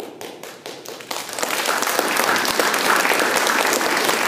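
Audience applause after a piano piece: a few scattered claps start it, and about a second in it swells into steady, full applause.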